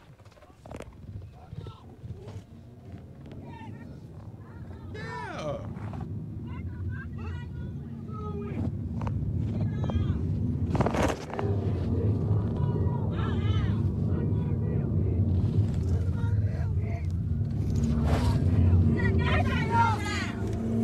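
Low engine and road rumble from inside a moving car, growing steadily louder, with brief muffled voices over it, heard through a phone recording.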